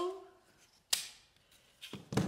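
A hand-held hole punch snapping through the paper of a lantern: one sharp click about a second in, and a fainter click near the end.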